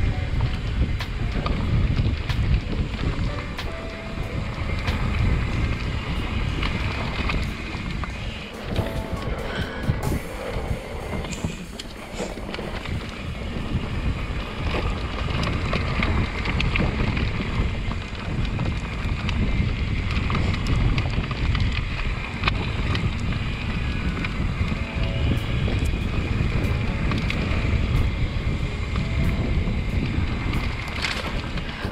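Wind rumbling on an action camera's microphone over the tyre and trail noise of a mountain bike riding a dirt singletrack. The sound is steady and fairly loud throughout.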